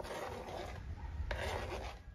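Kitchen knife scraping chopped seasonings off a plastic cutting board into a cooking pot, a rasping scrape with a sharper stroke about a second and a half in, over a steady low rumble.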